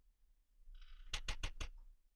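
Four quick, light clicks in a row, a little over a second in, after a brief soft rustle.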